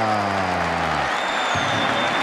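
A TV commentator's long, drawn-out shout of "defesa" over stadium crowd noise, the held voice falling in pitch and ending about a second in.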